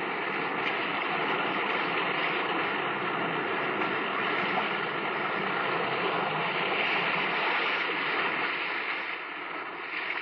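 Radio sound effect of sea surf: a steady rushing of waves that eases a little near the end, with the narrow, dull sound of an old radio transcription.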